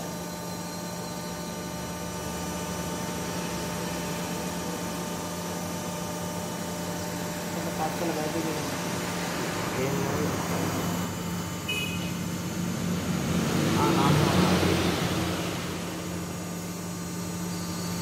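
Hydraulic guillotine shear's pump motor running at idle, a steady hum with a fixed low tone. A louder rushing swell rises and falls about two-thirds of the way through.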